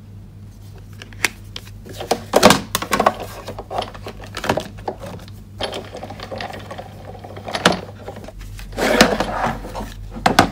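Sizzix Big Shot die-cutting machine being hand-cranked, its rollers pressing a plate sandwich with a plastic embossing folder through, with clacks and knocks of the plates and folder being handled. The loudest knocks come about two and a half seconds in and again near the end.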